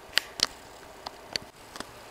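A few short, sharp clicks over a quiet room: two close together in the first half second, then two more around a second and a half in.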